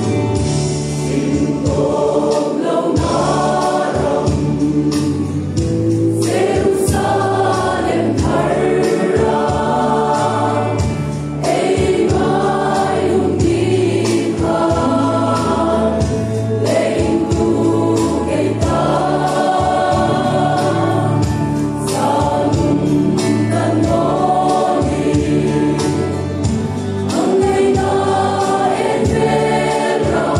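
Mixed choir of women and men singing a gospel hymn together in phrases of a few seconds, over instrumental accompaniment with a low bass line.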